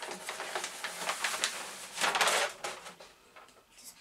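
Cardboard mailing tube being torn open and crumpled by hand: a run of ripping and crinkling noises, loudest about two seconds in, then quieter.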